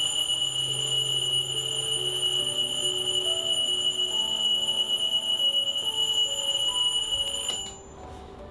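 An alarm clock sounding a continuous high-pitched electronic tone, cut off suddenly near the end as it is switched off.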